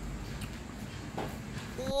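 Faint eating sounds from a woman chewing a mouthful of food, over a low, even room background. Near the end a man's voice begins a drawn-out "wow" that rises and then falls in pitch.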